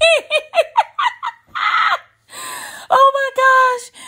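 A woman laughing hard: quick high-pitched giggles for about a second, then breathy, wheezy laughs, ending in a drawn-out high squeal.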